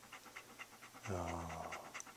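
Labradoodle panting rapidly with its mouth open, about six or seven breaths a second. A brief, low, steady hum comes in around the middle.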